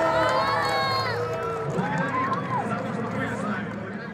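A large group of children shouting and cheering together, many high voices overlapping, fading out toward the end.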